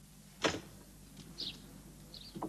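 A door being opened: a short latch click about a quarter of the way in, then a couple of faint, short squeaks.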